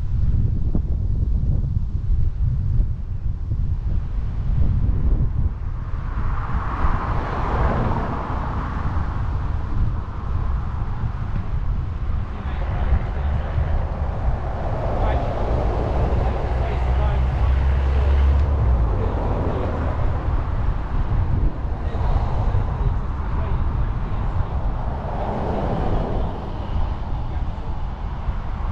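Wind buffeting the microphone of a camera on a moving bicycle, a steady low rumble throughout. Road traffic passes alongside in three swells, about six seconds in, around the middle, and near the end.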